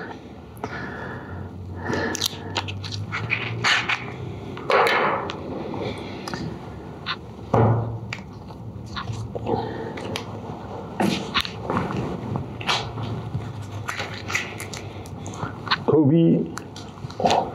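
Roll of brown gummed paper tape being unrolled and handled over a wooden board: scattered rustles, rips and knocks.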